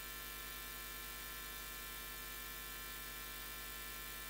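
Steady electrical hum with a faint hiss, unchanging throughout.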